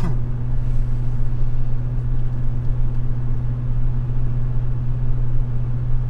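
Ford pickup's exhaust droning steadily inside the cab while cruising at highway speed: a constant low hum over road rumble. The exhaust is straight-through, with a Roush muffler that offers little muffling and a resonator added upstream.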